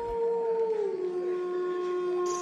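A sustained, eerie howl-like tone that slides a little lower just under a second in and then holds steady.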